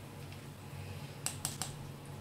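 A spatula tapping three times in quick succession against the rim of a stainless steel pot of curry, sharp clicks a little over a second in, over a low steady hum.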